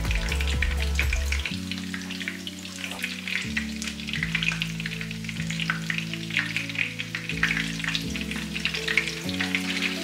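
Cornflake-crusted chicken breasts shallow-frying in sunflower oil in a pan, the hot oil sizzling with a steady, dense crackle.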